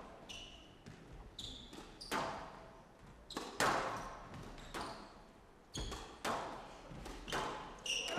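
A squash ball being struck back and forth, with sharp hits about every second from the rackets and the walls of a glass court. Short high squeaks of court shoes on the floor come between the hits.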